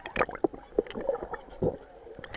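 Pool water moving around an underwater camera: irregular muffled knocks and gurgles.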